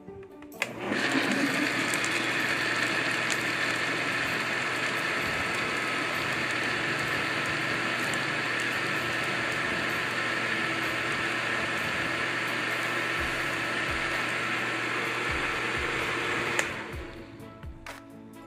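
Electric countertop blender running at one steady speed, whipping a cream and condensed-milk ice cream base with peanuts in it. It starts about a second in and cuts off near the end.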